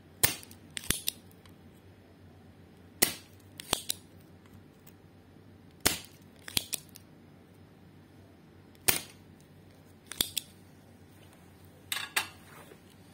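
Spring-loaded desoldering pump snapping as its plunger is released over solder joints, a sharp click about every three seconds, each followed by a few lighter clicks. It is sucking molten solder off the pins of a TDA7377 amplifier IC to free the chip from the circuit board.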